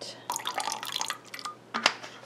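A run of small clicks and rattles, then one sharp tap near the end, from handling a container and spoon while white titanium dioxide colorant is added to a tub of soap batter.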